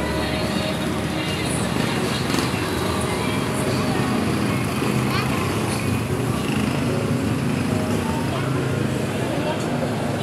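Busy street ambience: voices talking in the background over steady traffic noise from passing motor vehicles.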